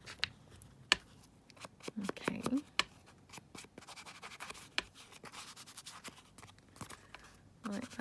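Ink pad rubbed along the edges of a paper journaling card: soft scratchy rubbing with a few light clicks and taps.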